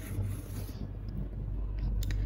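Faint rustle and scrape of a cardboard box sleeve as the inner tray is slid out, over a steady low hum.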